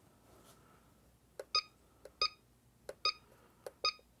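Cellpro PowerLab 8 charger beeping as its keypad buttons are pressed: four short, high electronic beeps, the first about a second and a half in, then about one every three quarters of a second, some with a faint key click just before.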